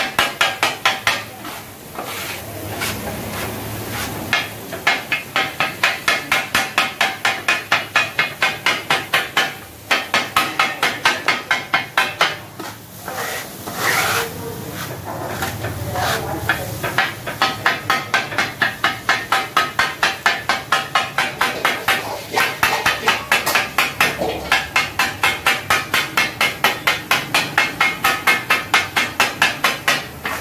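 Kothu parotta being chopped on a flat iron griddle with a steel blade-spatula: fast, rhythmic metal-on-metal clanging at about four to five strokes a second. A few short breaks, the longest about halfway through, are where the blade scrapes the mix together on the griddle.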